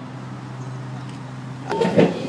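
Steady low engine hum. Near the end it gives way abruptly to louder clattering noise inside a moving metro train.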